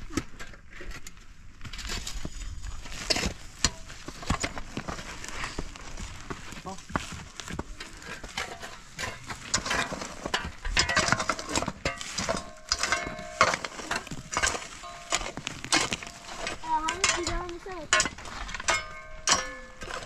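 Steel shovel scraping into dry stony soil and tossing earth and stones onto a pile, a continual run of scrapes with gravel rattling and clinking.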